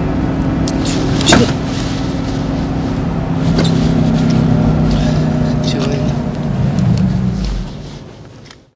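A car engine running with a steady low hum, with a few sharp clicks, one loud about a second in. The hum fades out near the end.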